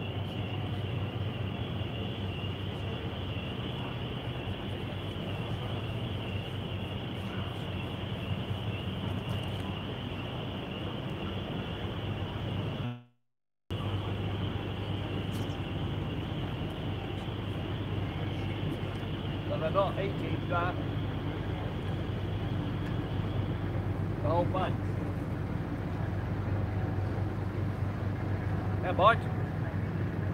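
A steady mechanical hum, low with a high thin whine over it. The whine stops about three-quarters of the way through, and the audio cuts out for a moment near the middle. A few short, rising calls break in during the second half.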